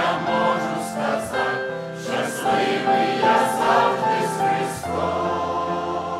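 Mixed choir of men and women singing a hymn in Ukrainian, several voice parts holding notes together in slow steps.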